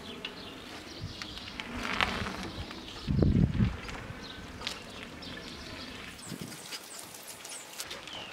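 A bicycle rolling past on asphalt, its tyres hissing on the road, with faint bird chirps; a short loud low rumble comes about three seconds in.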